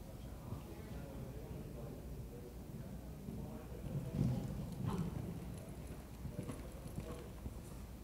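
Horse cantering on sand arena footing, a steady rhythm of dull hoofbeats, with louder thuds about four to five seconds in as it takes off over a show jump and lands.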